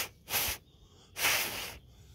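A person blowing three puffs of breath into the pits of a morel's cap to clear them out, the last puff the longest, about a second in.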